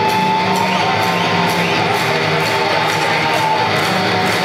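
Live rock band playing, with electric guitar to the fore over a steady beat, recorded from the audience in a hall.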